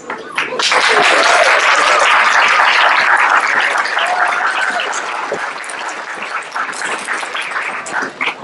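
Audience applauding: the clapping swells quickly about half a second in, then slowly dies down.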